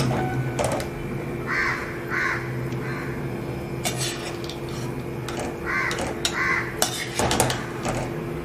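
Metal utensils and dishes clinking and knocking in a scattered series of sharp clicks, the loudest cluster near the end, as the cooked chicken chukka is handled. A crow caws in the background, two calls about a second and a half in and two more about six seconds in, over a steady low hum.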